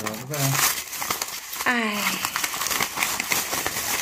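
Aluminium foil crinkling and crackling as hands unfold a foil-wrapped package, a dense run of small crackles.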